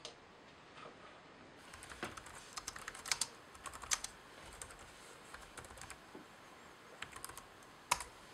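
Typing on a laptop keyboard: irregular runs of key clicks, ending with one sharper key press near the end as the chat message is sent.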